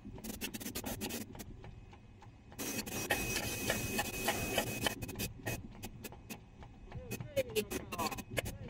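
An 18-cavity rotary compression moulding machine for plastic caps running in production: a quick irregular run of sharp metallic clicks over a steady hum, with a denser, louder stretch of clatter for about two seconds in the middle.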